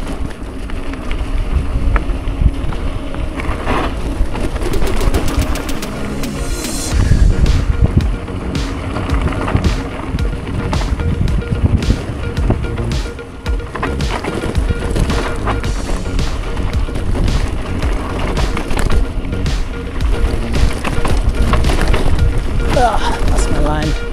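Gravel bike rolling fast down a rocky dirt road: tyres crunching and rattling over stones, with the frame and handlebar gear knocking and wind on the microphone. A quick run of even ticks comes about five seconds in, then a heavy rumble over rougher ground.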